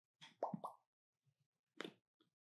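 A few faint, short pops about half a second in, then a single sharp click near the end.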